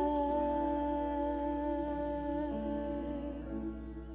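Cantata singing: one long sung note held steadily, with quieter lower notes joining about halfway through.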